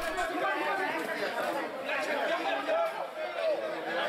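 Field sound of a rugby match: several voices of players and onlookers calling and talking at once, with no single voice standing out.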